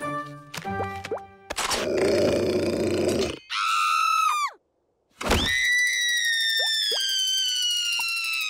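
Cartoon soundtrack of music and sound effects. It opens with short musical stabs, then a loud, noisy growling stretch and a high cry that falls away. After a sudden half-second silence, a long high tone slides slowly downward.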